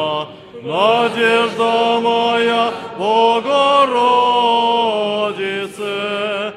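Orthodox church choir chanting a liturgical hymn, with long held notes in sustained phrases. The singing breaks off briefly about half a second in and again after about three seconds, and each new phrase slides up into its note.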